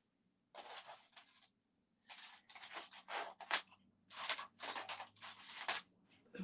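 A string of faint, uneven rustling and scraping noises: something being handled off-camera. There is a short gap at about 1.5 to 2 seconds, then the noises come in quick bursts until near the end.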